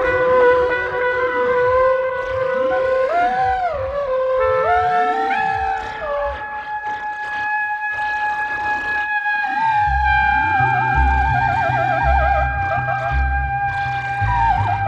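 Live music for trumpet and trombone with electronics: long held brass notes layered over sweeping, gliding tones. About ten seconds in, low pulsing bass notes enter and a fast wavering figure runs through the high notes.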